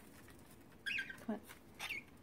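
A cockatiel giving two short, high-pitched chirps, one about a second in and another near the end.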